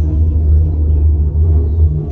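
Steady low rumble inside a moving cable-car cabin as it runs along its cable.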